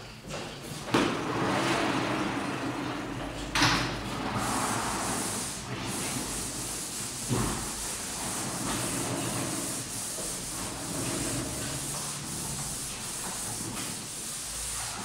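Sliding chalkboard panels being pushed along their rails: a rumbling slide starting about a second in and ending in a knock. Then a wiper rubbing across the chalkboard with a steady swishing hiss, with another knock partway through.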